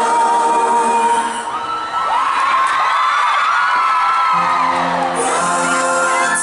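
Live concert sound recorded from the audience: a held sung note over the band, then fans whooping and screaming over the song. Low guitar and band notes come back in about four seconds in.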